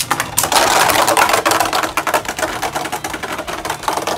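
Two Beyblade Burst spinning tops clashing and grinding against each other and against the plastic stadium: a dense run of rapid clicks and scraping that is loudest in the first half and thins out toward the end.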